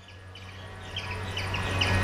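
A small bird chirping repeatedly, about three short high chirps a second, over a background hiss that grows steadily louder.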